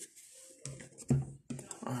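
Trading cards being handled in the hands: the soft slides and clicks of cards rubbing against each other. A short vocal sound cuts in about a second in and is the loudest thing.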